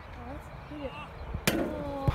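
Faint open-air ambience with distant voices, broken about one and a half seconds in by a single sharp thud.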